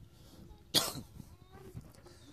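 A person coughs once, sharply, about three-quarters of a second in.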